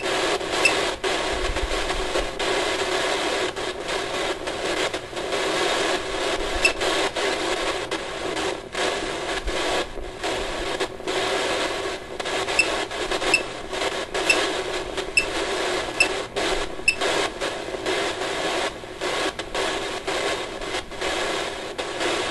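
Radio-like static hiss, choppy with many brief dropouts and a few faint high blips, playing from a ghost-hunting phone app.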